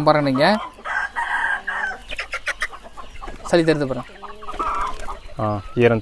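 Country chickens (native Indian fowl) calling: two drawn-out calls, one about a second in and another near the end.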